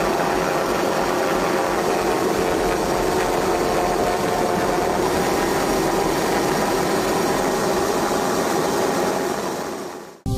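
Steady drone of an aircraft engine heard from on board, a constant rushing noise with a faint hum of several steady tones; it fades out near the end.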